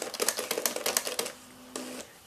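Canon X-710 color plotter's ALPS pen mechanism drawing large lettering: a rapid train of ticks that stops about a second and a half in. A faint steady hum and a single click follow near the end.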